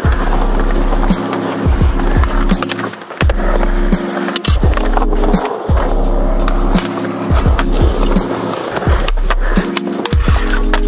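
Skateboard wheels rolling on concrete, with several sharp clacks as tricks are popped and landed and the board slides along a metal handrail, over music with a steady bass line.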